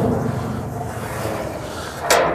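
Large sheet-metal side door of a New Holland Roll-Belt 450 round baler being swung open on its hinge: a steady, noisy rumble with no sharp knock, slowly fading.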